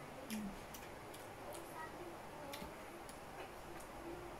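Faint clicks of a metal fork against a plate while eating, several light taps at irregular intervals.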